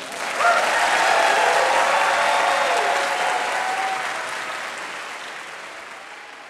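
Theatre audience applauding, the clapping swelling within the first second and then fading away over the last two seconds.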